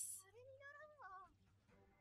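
Faint anime dialogue: a single high-pitched line of Japanese voice acting, rising and then falling, about a second long.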